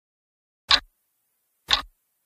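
Clock ticking sound effect: two sharp ticks about a second apart, the first a little under a second in.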